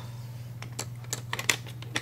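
A few light, scattered clicks of small plastic LEGO pieces being handled, over a steady low hum.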